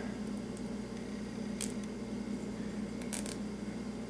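Nylon zip ties being handled and threaded through one another, with a faint click about a second and a half in and a quick run of clicks near the end, over a steady low hum of room tone.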